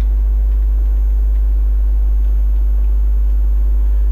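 Loud, steady low electrical hum, typical mains hum on the recording, with a faint steady high-pitched whine above it. It holds unchanged throughout with no other clear sound.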